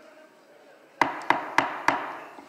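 Four quick raps of a wooden gavel, about three a second, starting about a second in: the chair calling the hall to order. Faint murmur of conversation in a large hall lies behind them.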